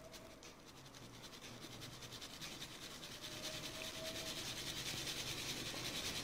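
Flour and icing sugar being sifted through a fine mesh sieve: a soft, quick, even rasping that grows steadily louder.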